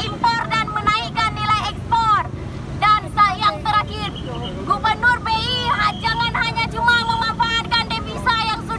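A protester's voice shouting an oration through a megaphone, the sound thin and squeezed into the middle range, over steady street-traffic rumble.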